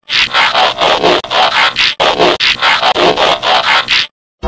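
Digital glitch sound effect: loud static-like noise pulsing rapidly, about five pulses a second, with a brief break near the middle, cut off abruptly at the end.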